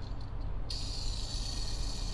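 Faint whir of a 1/64-scale diecast toy car's wheels being spun by a finger, over a steady low hum.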